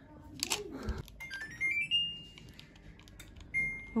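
Split air-conditioner indoor unit playing a rising run of electronic beep tones, a start-up jingle as it is switched on by remote, about a second in, with the top note held briefly. Near the end comes a single short beep. A brief handling rustle sounds just before.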